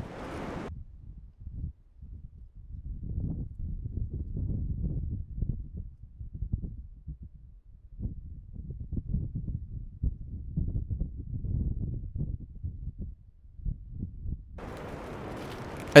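Wind gusting against the microphone in the forest: a low, uneven rumble that swells and drops with each gust.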